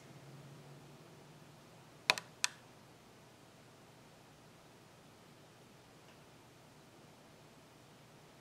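Two short, sharp clicks a third of a second apart, about two seconds in, over faint room tone.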